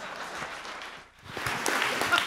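Audience applauding at the close of a talk; the clapping thins briefly just past a second in, then swells again.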